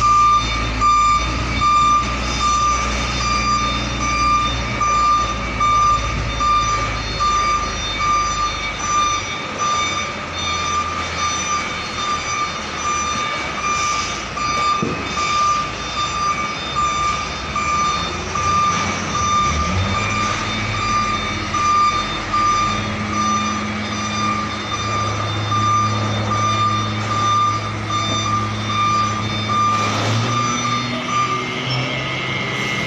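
A truck's reversing alarm beeps over and over at one steady pitch while the diesel engine of a tractor unit runs at low revs, backing a double-container trailer. The engine note rises and settles about twenty seconds in.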